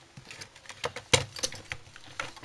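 A few light clicks and knocks of plastic and metal parts of a small CRT television being handled as it is taken apart, the loudest knock a little past a second in.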